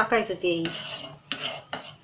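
Wooden spatula scraping over a tawa, spreading oil across the griddle in a few short strokes in the second half.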